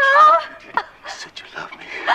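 A woman's short, high-pitched, wavering cry of terror, about half a second long, followed by quieter breathy, broken sounds of struggle.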